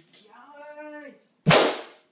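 A short held vocal sound, then a single loud, sharp balloon pop about one and a half seconds in, with a brief echo.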